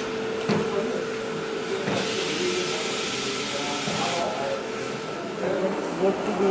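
Coffee machine hissing for about two seconds, starting sharply and cutting off, over a steady hum, with voices murmuring in the background.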